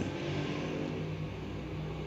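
Steady low hum with a faint hiss behind it: background noise in the room.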